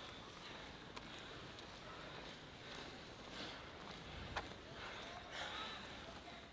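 Faint outdoor ambience at an athletics track, with distant voices and a few sharp clicks, the loudest about four and a half seconds in.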